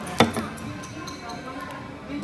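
A single sharp tap or click about a quarter of a second in, against faint background voices.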